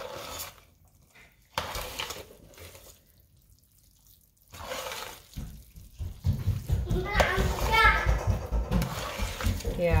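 A metal spoon stirring and scraping a thick rice, chicken and broccoli mixture in a stainless steel pot, in separate strokes at first, then busier and louder in the second half.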